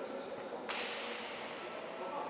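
A single sharp smack about two thirds of a second in, with a long echo that dies away over about a second in the large hall, over a faint background murmur.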